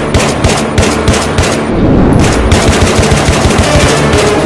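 Rapid automatic gunfire sound effect from a film's action soundtrack: quick shots about six a second, running into a denser, continuous burst about halfway through.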